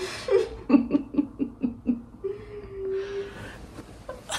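A person laughing in a quick run of short bursts, then one steady held vocal note near the middle.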